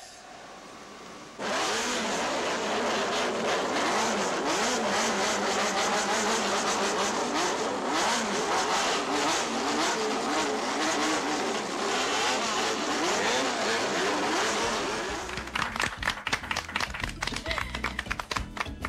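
Many modified motorcycles revving together, their throttles blipped so the engine notes rise and fall in rapid waves. A little over two seconds before the end, this gives way to music with a steady beat.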